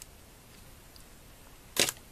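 Handled LEGO plastic pieces give one short, sharp click near the end; before it, only faint room tone.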